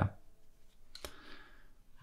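A single computer mouse click about a second in, followed by a soft hiss, against a quiet room background.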